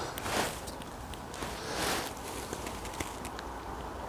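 Footsteps of a walker on a forest path, a few steps, the clearest about half a second and two seconds in.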